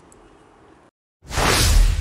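A whoosh transition sound effect with a deep low rumble underneath, swelling up about a second in and dying away.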